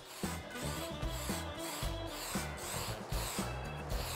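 Aerosol spray can of rust converter primer hissing in several short passes over background music with a steady bass beat.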